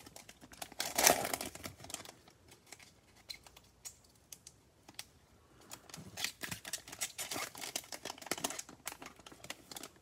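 Foil trading-card pack wrapper crinkling while a stack of cards is slid out and shuffled, the cards clicking against each other. There is a loud crinkly burst about a second in, a quieter stretch in the middle, then a run of quick clicks later on.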